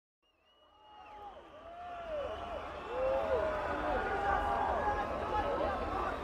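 Festival crowd waiting for a band, many voices shouting and whooping over one another, with one high whistle in the first second and a low rumble underneath. The sound fades in from silence and reaches full level about three seconds in.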